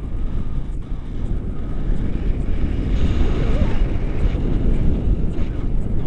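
Airflow of paraglider flight buffeting a body-mounted action camera's microphone: a loud, steady, low rumbling rush of wind noise.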